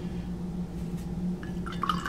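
Watercolour brush being rinsed in a glass jar of water, a brief watery swishing near the end, over a steady low hum.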